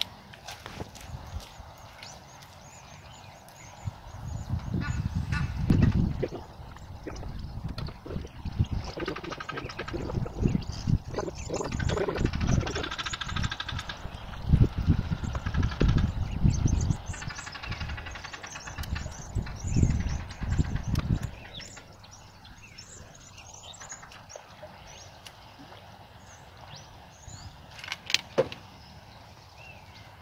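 Gusts of wind buffeting the microphone in irregular bursts, with bird calls in the middle stretch; it goes quieter about two-thirds of the way through.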